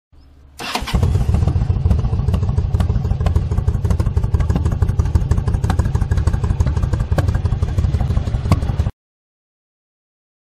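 V-twin cruiser motorcycle engine starting: a short quiet lead-in, then the engine catches with a sharp burst. It runs steadily with a fast, lumpy low beat, then cuts off suddenly about a second before the end.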